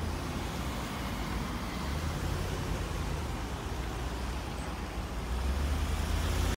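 A small car driving slowly by, with a steady low rumble of engine and tyres that grows a little louder near the end.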